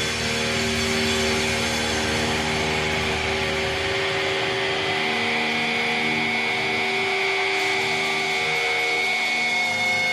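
Sustained electric guitar feedback and amplifier drone at a thrash metal concert: several long held tones over a noisy wash, with no drums or riffing. The deep rumble fades about four seconds in, and a higher set of held tones takes over about halfway through.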